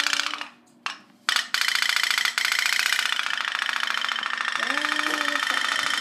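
Candle-powered tin pop-pop boat running in bathtub water, its steam boiler giving a fast, steady stream of pops like a tiny engine. The popping breaks off briefly about half a second in, with a couple of clicks, then resumes.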